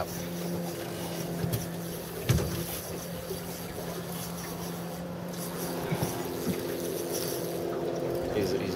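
A boat's motor running with a steady, even hum, with a few light knocks over it.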